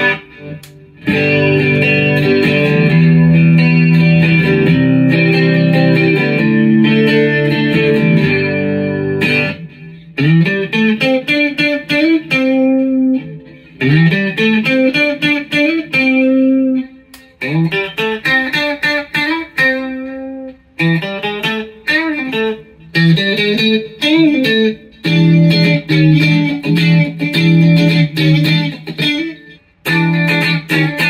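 Electric guitar, a single-coil Mustang-style clone missing one string, played through a Fender Mustang GT amp. It plays held, strummed chords for about nine seconds, then single-note lead lines with bends and slides, then chords again near the end.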